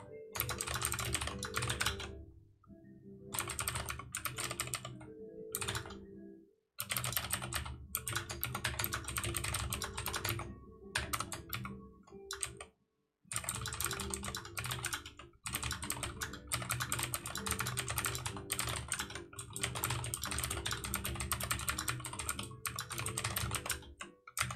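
Typing on a computer keyboard: rapid runs of key clicks in bursts of a few seconds, with brief pauses between them.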